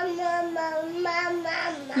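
A voice holding a long drawn-out singsong note, wavering slightly in pitch with a few short breaks.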